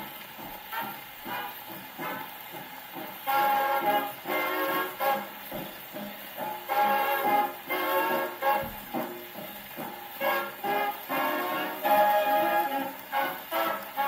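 A 1942 swing big band 78 rpm record played on an Orthophonic Victrola acoustic phonograph: an instrumental passage of short, punchy ensemble chords between sung choruses, with the faint surface hiss of the shellac disc.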